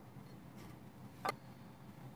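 Quiet room tone with a single short click a little past the middle.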